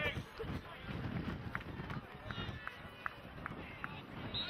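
Pitch-side sound of a Gaelic football match: players shouting brief calls across the field over a steady low rumble.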